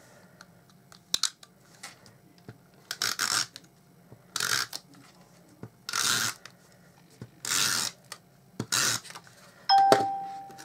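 Stampin' Up Snail tape-runner adhesive drawn across cardstock in five short strokes, about a second and a half apart. A short ringing clink comes near the end.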